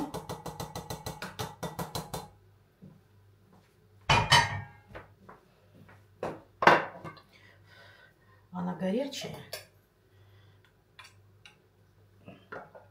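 A quick clatter of a pot being tapped out into a glass bowl, about nine knocks a second for two seconds. Then come two loud single knocks of kitchenware set down on the counter, about four and six and a half seconds in.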